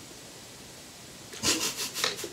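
Quiet room tone for about a second, then, about a second and a half in, a run of quick rubbing and rustling noises from people moving and handling things close by.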